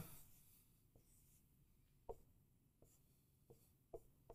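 Dry-erase marker on a whiteboard, a few short, faint taps and strokes spaced roughly a second apart as lines are drawn.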